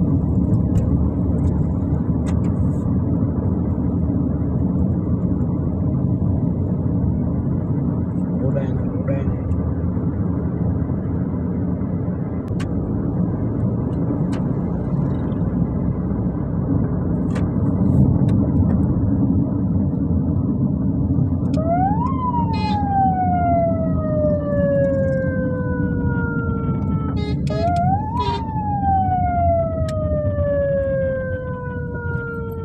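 Steady road and engine noise from inside a moving vehicle, with a few light clicks. About 21 seconds in, a siren rises sharply and then winds slowly down in pitch. Near the end it rises again and falls the same way.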